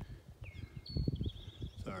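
Low rumble and knocks on the microphone of a handheld outdoor recording, with a bird singing a thin, high, trilling song in the background from about half a second in.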